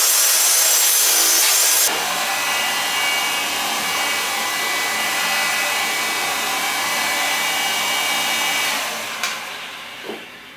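A handheld power saw cutting the rough edge of a fibreglass moulding stops abruptly about two seconds in. A heat gun then runs steadily with a faint whine, heating the fibreglass to soften it for reshaping. Near the end its sound dies away with a click.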